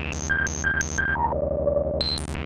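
Ciat-Lonbarde Peterlin (a Benjolin-type synthesizer) playing one oscillator through its filter, with the rungler stepping the filter in a chaotic pattern. A steady, fast-pulsing low drone runs underneath stepped tones: three short high blips about a third of a second apart, then a step down to a lower tone held near the end.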